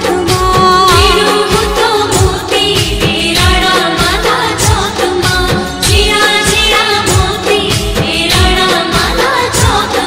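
Women's voices singing a Gujarati devotional song to the mother goddess, over a steady drum beat and backing instruments.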